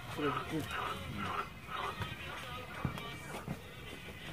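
Quiet, indistinct men's voices talking, with a couple of short knocks.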